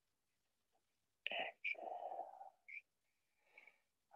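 A man's quiet, breathy whisper starting about a second in and lasting about a second, followed by a brief fainter sound.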